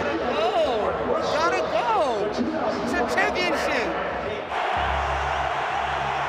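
Men's voices talking over background music, then about four and a half seconds in a sudden change to a steady stadium crowd roar.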